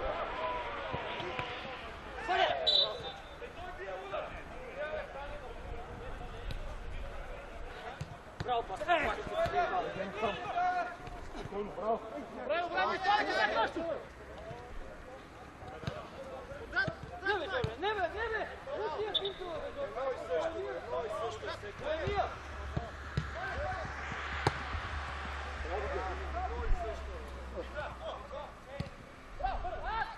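Players' voices shouting and calling during a mini-football match, with the thuds of the ball being kicked now and then.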